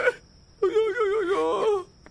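A woman's drawn-out, wavering wail, about a second long, starting after a short pause.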